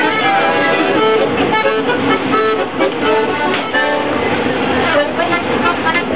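Accordion playing a tune of held notes and chords, with people talking underneath.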